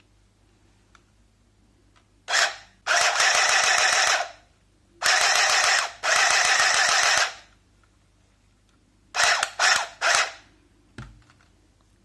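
Arricraft battery-powered handheld sewing machine running in bursts of rapid stitching through fabric: a brief burst, two longer runs of one to two seconds, then a few short stabs near the end.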